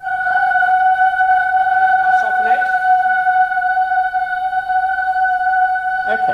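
Boy trebles singing one long held note in unison, a pure, steady tone.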